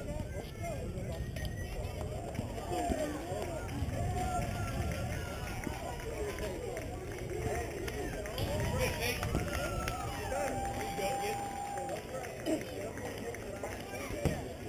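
Distant, indistinct voices of players and spectators calling out across the field, with one long drawn-out shout about ten seconds in, over a steady low rumble.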